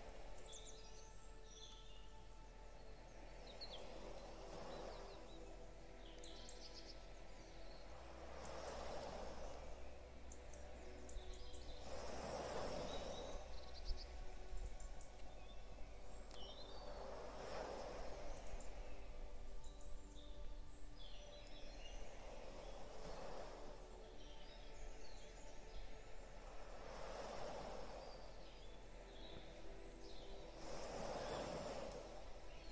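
Sea waves washing in and receding about every four to five seconds, with small birds chirping and a soft steady musical drone underneath.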